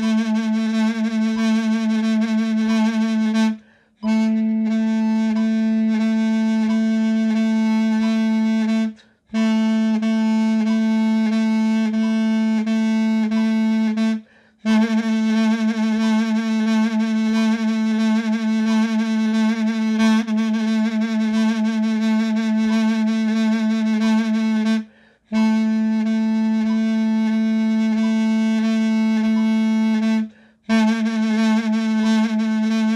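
A mey, the Turkish double-reed pipe, playing a single note, La (A), as long runs of rapidly repeated tongued notes. Vibrato and accents fall on some of the notes. The runs are broken four times by short breath pauses.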